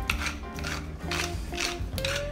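A wooden pepper mill grinding black pepper, a series of short rasping grinds about twice a second as it is twisted, over background music.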